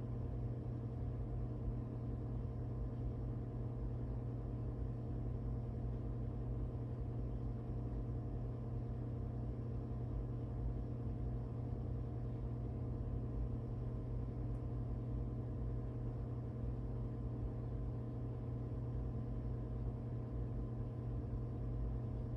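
Steady low hum of room tone, unchanging throughout, with several faint steady tones above it.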